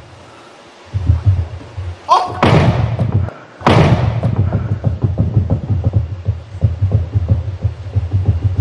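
A low, heartbeat-like throbbing suspense sound, broken by two sudden thuds about two and a half and three and a half seconds in, the second fading out slowly.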